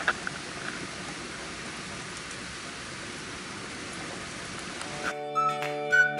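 Steady rain falling, an even hiss. About five seconds in it cuts off suddenly and background music with a melodic line begins.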